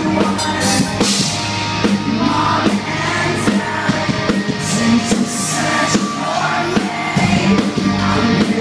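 A rock band playing live at full volume: electric guitar, bass and a drum kit with frequent drum and cymbal hits.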